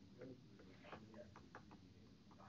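Near silence: faint room tone with a few light, scattered clicks and a faint low murmur.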